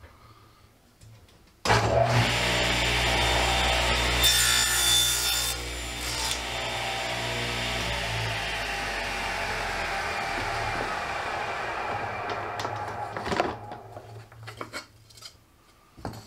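Table saw switched on with a sudden start, running steadily with a brighter, harsher stretch a few seconds in. Then it is switched off, and its pitch sinks slowly as the blade winds down over several seconds. A few knocks come near the end.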